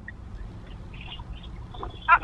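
Low, steady background rumble inside a car, with a few faint high chirps about a second in.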